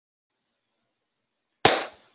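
Silence, then near the end a single sudden burst of noise that dies away within about a third of a second.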